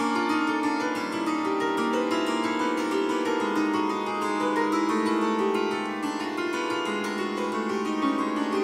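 Grand piano strings struck directly with the handles of wooden or plastic chopsticks in a rapid run of random sixteenth-note pitches. With the sustain pedal held down, the struck strings ring on and blend into a continuous, shimmering wash of overlapping notes.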